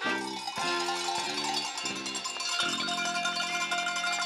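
A table set of tuned cowbells in graded sizes played as a melody, with a new ringing note about every half second, then one long held note near the end.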